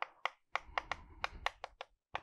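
Chalk writing on a chalkboard: a quick, irregular run of about a dozen sharp little ticks as the strokes of the characters are made.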